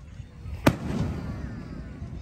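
Aerial firework shell bursting: one sharp bang just under a second in, followed by a lingering rumble.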